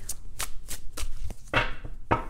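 A deck of tarot cards being shuffled by hand, a quick series of papery card slaps, roughly three a second.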